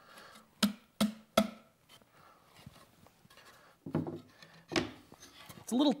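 Three sharp wooden knocks in quick succession as hardwood tray pieces are pushed together, a table-sawn tongue pressed into its dado for a test fit that is still a little tight.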